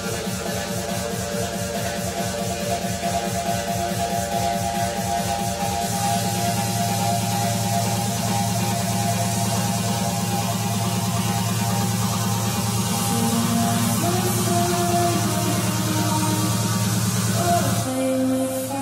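Uplifting trance music from a DJ mix, with a fast pulsing bass beat that gives way to a held, sustained bass about six seconds in, while melody lines carry on above.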